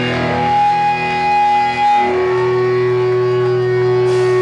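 Rock band playing live, the distorted electric guitars and bass holding long sustained notes with no drums. The held chord changes about halfway through.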